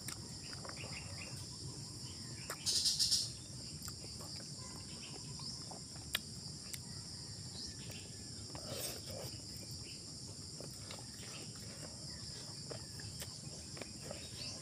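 A steady, high-pitched chorus of insects, with a brief louder hiss about three seconds in. Faint clicks and smacks of eating by hand are scattered through it.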